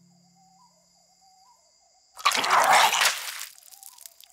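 A sad music cue fades out, leaving near quiet with a faint wavering tone. About two seconds in, a loud, rough retching burst lasts about a second: a sound effect of someone vomiting.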